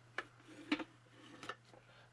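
A few faint, sharp clicks of hard plastic, about three in two seconds, as the Fisher-Price Gotcha Gopher sprinkler toy is handled and the gopher figure is pushed back down into its plastic flower pot.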